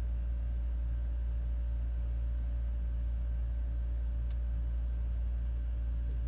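Steady low mechanical hum with a faint steady whine above it, and one faint click about four seconds in.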